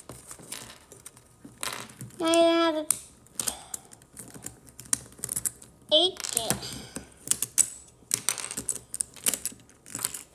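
Plastic pieces of a magnetic 4x4 speed cube clicking and snapping as it is pulled apart piece by piece, in many quick irregular clicks. A child's voice sounds twice, a short held hum about two seconds in and a brief vocal sound about six seconds in.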